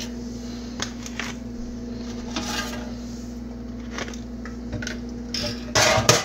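Plastic cling wrap crinkling and rustling as a wrapped loaf tray is handled, with scattered small clicks and a louder burst of handling noise near the end. A steady low hum runs underneath.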